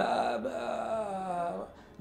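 A man's voice holding one long, level hesitation sound, an "ehh", for nearly two seconds, then trailing off just before the end.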